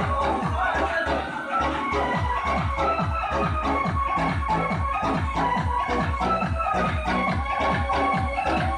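DJ remix dance music with a fast, steady beat of deep, falling kick drums, which drops out briefly about a second and a half in.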